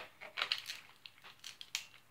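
Hard plastic toy lightsaber parts being handled and fitted together: a scatter of faint, short clicks and knocks as a hilt piece goes onto the assembly.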